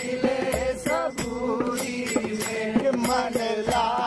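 Intro music of chanting: a voice chants over a steady drone, with sharp percussion strikes a little under a second apart.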